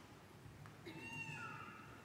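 A faint, high-pitched, cry-like voice starting about a second in and held with slight pitch bends.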